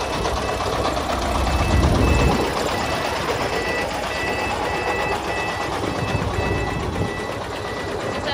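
Diesel engine of a sand-laden công nông farm truck working hard as it crawls across a rough ploughed field, heaviest about two seconds in. From the middle on, a short electronic beep repeats about twice a second.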